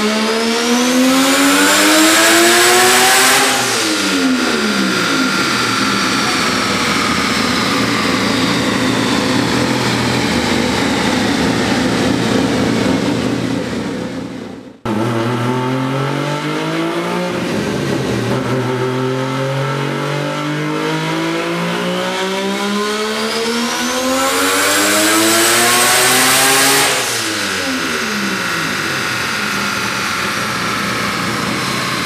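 Turbocharged Mazda 20B three-rotor bridgeport-port rotary engine in a first-generation RX-7 making full-throttle dyno pulls. The revs climb to a peak and fall away as the throttle closes, twice, with an abrupt break between the two pulls about halfway through.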